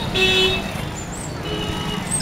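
A vehicle horn gives one short toot, about half a second long, just after the start, over the steady noise of street traffic.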